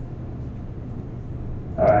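Room tone: a steady low hum, then a man's voice saying 'all right' near the end.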